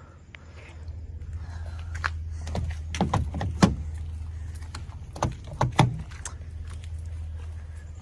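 Sharp clicks and knocks from a pickup truck's door being tried, a cluster about two to four seconds in and more about five to six seconds in, over a steady low hum: the door is locked.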